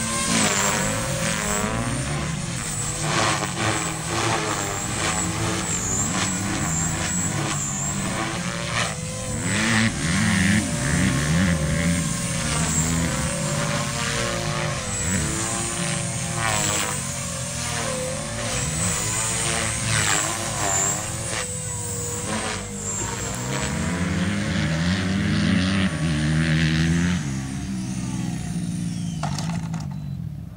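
Electric RC helicopter (Beam E4 with a Scorpion brushless motor) flying 3D aerobatics: the motor's whine and the rotor blades' whoosh rise and fall in pitch with each manoeuvre. Near the end the sound drops away as the helicopter sets down.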